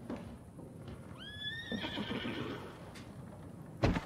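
A horse whinnies once about a second in: a call that rises, levels off and trails away. A sudden thud comes near the end.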